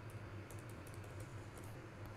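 Faint computer keyboard keystrokes, a few light, scattered key clicks, while code is being deleted in an editor.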